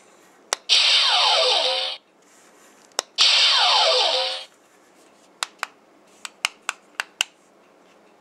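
Toy Star Trek II Type-2 hand phaser firing twice on its kill setting: each shot is a click of the trigger followed by a loud electronic zap of about a second and a half, with falling tones. Near the end comes a run of about eight sharp clicks from its plastic buttons.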